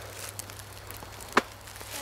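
Faint rustle of footsteps on dry leaf litter, with one sharp click about a second and a half in.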